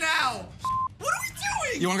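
A short censor bleep, one steady tone lasting about a quarter of a second, covers a word about two-thirds of a second in, amid a man's excited laughing shouts.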